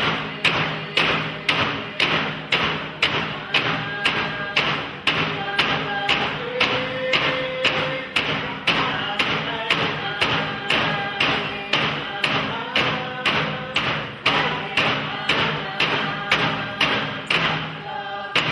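Yupik frame drums beaten in a steady, even rhythm of about two strikes a second, accompanying voices singing a traditional dance song.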